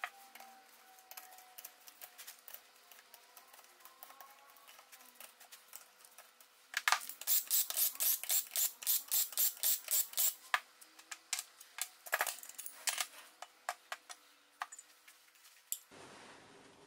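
Cordless drill-driver undoing the camshaft cap bolts on a Subaru boxer cylinder head, heard as a quick run of even clicks, about four a second, from about seven to ten seconds in. Light clinks of metal engine parts being handled come before and after it.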